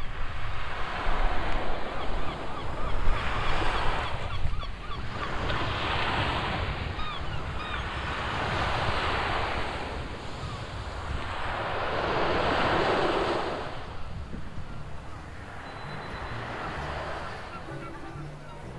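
Sea waves breaking and washing up on a sandy beach, each swell rising and falling away every few seconds, over a steady low wind rumble.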